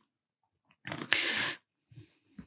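A short, noisy breath sound from the lecturer close to the microphone, about half a second long and starting about a second in, between spoken phrases.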